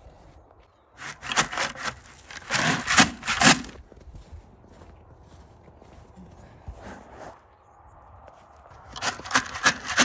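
Footsteps crunching on packed snow, a quick run of gritty crunches starting about a second in and lasting a few seconds, then quieter, and another run near the end.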